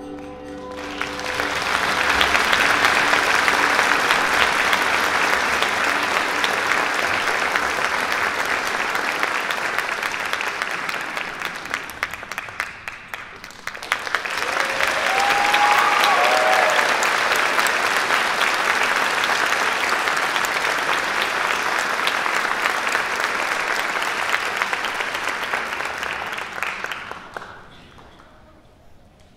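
Audience applauding: the clapping swells after the orchestra's last chord dies away, sags about halfway through, then surges again, with a brief cheer in the second wave, before fading near the end.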